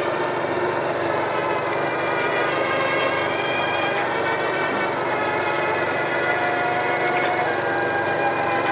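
Steady hiss and crackle of a 16 mm film's optical soundtrack played on an Eiki NT2 projector, with faint held tones that shift a couple of times.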